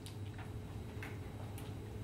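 Quiet room tone: a steady low hum under a few soft, scattered clicks, about four in two seconds.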